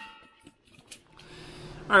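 Mostly quiet: a faint fading tail, one short click about a second in, then faint steady room hiss. A man's voice begins right at the end.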